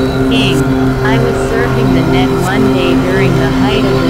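Layered synthesizer drone: several steady low tones held throughout, with short gliding pitch sweeps above them and an occasional sharp click.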